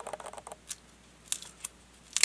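A fingernail picking and scratching at the stuck end of a roll of black adhesive tape to lift it. There are a few short, sharp clicks and faint crackles as the tape edge comes up.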